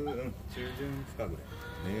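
Speech only: a short stretch of casual conversation in Japanese, with a drawn-out agreeing reply near the end.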